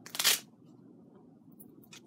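A short rasping, tearing rustle about a third of a second long as a wig grip band is handled, then faint handling noise and a light click near the end.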